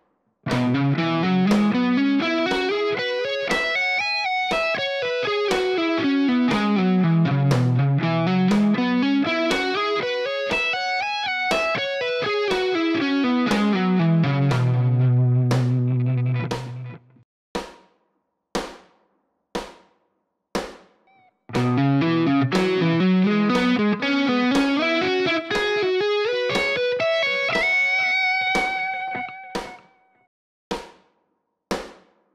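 Ibanez JEM electric guitar playing fast major-pentatonic licks that run up and down the whole fretboard over a steady click beat. One long run climbs and falls twice and lands on a held low note. After about four seconds of only the clicks, a second run climbs and ends on a held high note.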